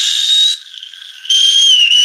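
A toddler screaming in two long, shrill, high-pitched squeals close to the microphone, the first breaking off about half a second in and the second starting just after a second in.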